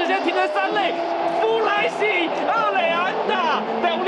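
Baseball TV broadcast audio: an announcer's excited voice calling a run-scoring base hit, over stadium crowd noise and steady cheering music.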